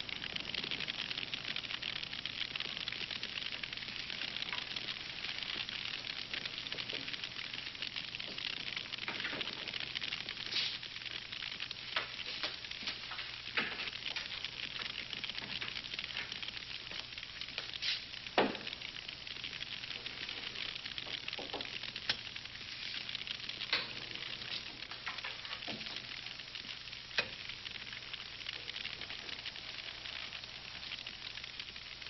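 Steady crackling hiss with scattered sharp clicks and pops; the loudest pop comes about eighteen seconds in.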